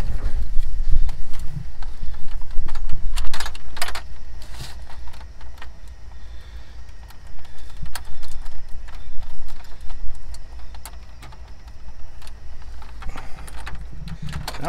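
Scattered clicks and knocks of a 2006 Ford F-550's plastic dash bezel and its retaining clips being worked and pried by hand, over a loud low rumble that is heaviest in the first few seconds.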